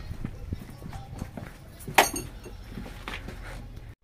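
Hurried footsteps on concrete with the rattle and clink of steel crucible tongs as a crucible of molten bronze is carried to the mould, with one sharp knock about two seconds in.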